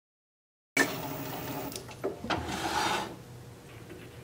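Silence, then from about a second in, wood scraping and rubbing with a couple of sharp knocks as a turned wooden lid is pressed against its body to test the fit of the freshly cut recess. After about three seconds it drops to a faint steady hum.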